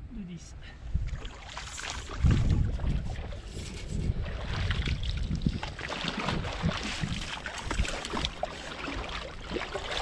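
Rubber waders sloshing and splashing as someone steps about in shallow, muddy river water, with irregular heavy thumps and wind rumbling on the microphone.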